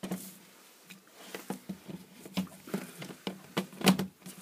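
Plastic clicks and knocks as a plug-in energy meter and a multi-socket extension lead are handled and set down on a desk, with a louder knock near the end as the meter is pressed into the lead.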